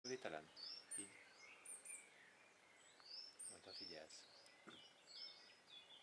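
Small birds chirping and twittering, faint: many short high notes that glide up and down, repeated throughout.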